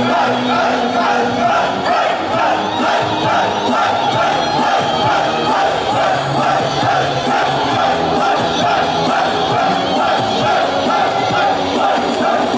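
Pop backing track playing loudly with a steady beat while a crowd of fans shouts along in unison. A held note breaks off about a second and a half in.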